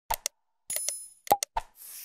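Subscribe-button animation sound effects: a couple of quick clicks, a short bright chime, a pair of pops and another click, then a whoosh near the end.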